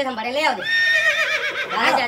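A horse's whinny: a high, wavering call lasting about a second, starting about half a second in, between stretches of talking.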